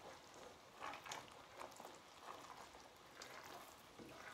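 Faint, irregular bubbling and popping of honey boiling in a stainless steel pan as it is stirred, the honey being cooked down to caramelise it.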